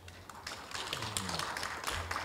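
Light applause from a small audience: many quick, scattered claps that start about a third of a second in and keep on.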